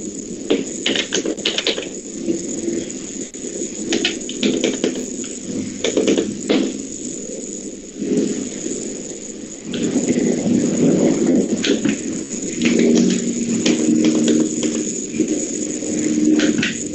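Classroom background noise while students work silently at their desks: a low, muffled murmur with scattered small clicks and rustles.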